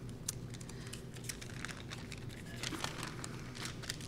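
Scattered small clicks and rustles of handling at a wooden lectern close to the microphone, as notes are shuffled, over a faint steady room hum.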